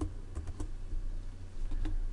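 A few faint clicks from computer controls, over a low steady hum.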